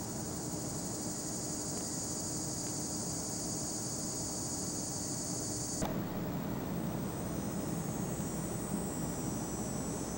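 Outdoor ambience: a steady high-pitched insect drone over a low, even rumble. The drone cuts off abruptly about six seconds in, leaving a softer rumble and fainter insect sound.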